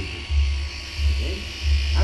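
Electric shearing handpiece buzzing steadily as it clips a vicuña's fleece, over a low throb that pulses about one and a half times a second.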